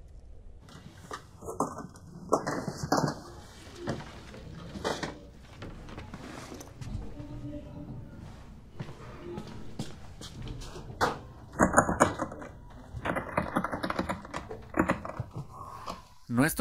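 Irregular knocks and thuds, the loudest around 12 seconds in, with a quick run of them near the end, along with faint voices.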